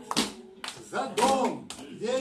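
Rhythmic hand clapping in time with the song, about two claps a second, with a man's singing voice rising and falling over it.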